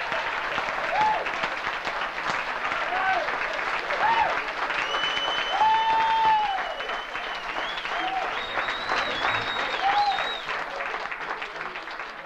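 Live audience applauding and cheering after the song ends, with shouts and whistles over the clapping, fading away near the end.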